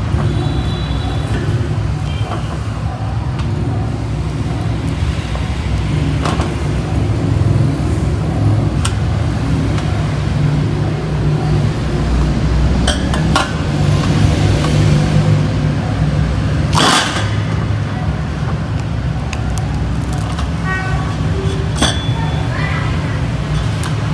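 A steady low rumble runs throughout, with scattered sharp clicks and knocks. The loudest clack comes about seventeen seconds in.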